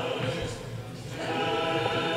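Church choir singing Orthodox liturgical chant in held, sustained notes. There is a brief lull between phrases about half a second in, and the singing resumes a little past the one-second mark.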